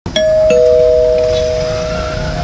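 A two-note doorbell-style chime, ding-dong: a higher note struck, then a lower note a moment later, both ringing on.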